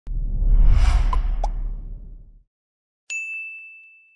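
Intro sound effects: a deep whoosh with two short blips in it, fading out about two and a half seconds in, then after a short gap a single bright ding that rings on and fades.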